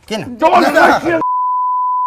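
A television censor bleep: a single steady, high-pitched beep that cuts speech off abruptly a little past the middle and lasts just under a second.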